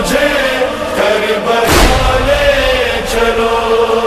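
Chanted devotional lament (nauha), voices holding long notes over a steady held tone, with a deep thump about two seconds in.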